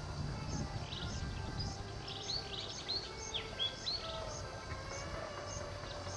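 Faint natural ambience with small birds chirping: a short high note repeating roughly every half second, and a flurry of quick rising and falling calls in the middle.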